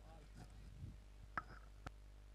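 Near silence, broken by two faint sharp clicks, the first about a second and a half in and the second half a second later.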